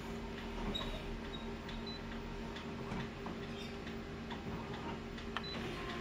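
Office colour photocopier running a copy job: a steady low hum with scattered faint ticks and clicks from its mechanism as it goes from scanning the original to printing.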